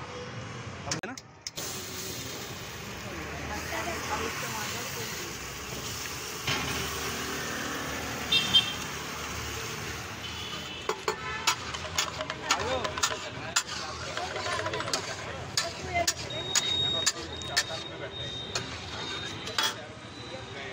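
Butter and pav sizzling on a hot flat iron griddle (tawa) at a street stall, over traffic and voices. From about halfway through, a metal spatula clinks and taps against the griddle again and again.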